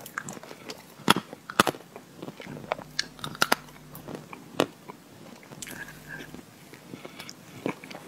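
Close-miked eating of a soft, fudgy chocolate lava cake: sticky, wet chewing and mouth sounds, with irregular sharp clicks.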